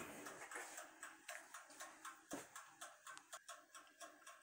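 Faint, rapid ticking of a mechanical timer, about four ticks a second, with one louder click a little past halfway.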